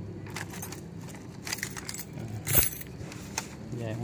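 A ring of keys jangling as one key is pushed into a laptop optical drive's emergency eject hole, with a series of small clicks and rattles. A sharp click about two and a half seconds in, as the drive tray is released.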